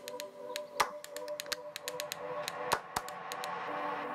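Logo-animation sound design: soft held music tones with a scatter of quick, sharp ticks and clicks, irregularly spaced.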